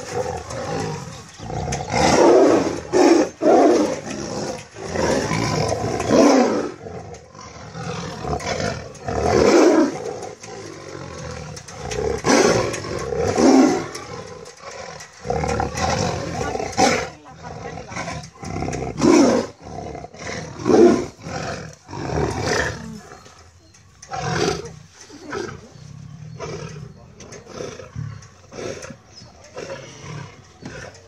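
Two tigers fighting and roaring in repeated loud bursts, growing quieter and sparser over the last several seconds.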